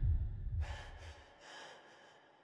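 A person's frightened breathing, two quick gasping breaths, over a low rumble that fades away, then near silence.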